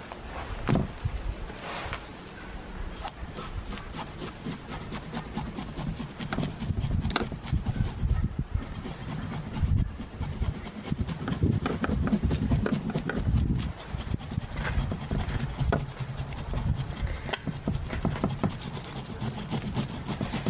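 The back of a blunt bait knife scraping the scales off a King George whiting on a cutting board: rapid, repeated rasping strokes that start a few seconds in and keep going.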